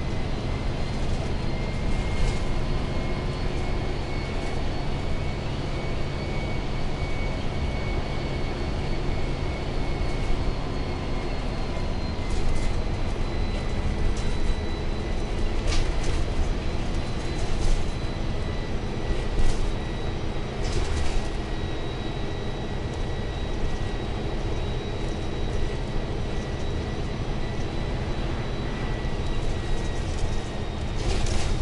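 Interior of a moving bus: steady engine and road rumble with a thin, steady high whine, and a few brief rattles or knocks around the middle.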